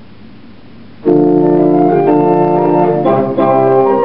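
1875 J.W. Walker and Sons single-manual pipe organ starting to play about a second in, a lively Spanish Baroque keyboard piece in full held chords that change about once a second, with short breaks between some of them.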